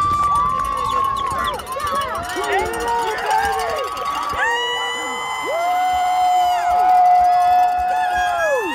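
A mix of voices calling and shouting over one another, with several long drawn-out yells.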